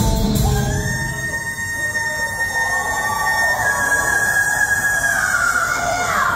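Live rock band with the low end dropped out, leaving a single high note that holds steady for several seconds and then slides down in pitch near the end.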